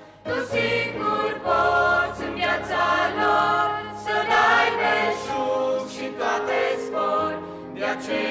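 Church choir singing a Christian song, several voices in harmony over a steady low bass line, coming back in about half a second in after a brief pause.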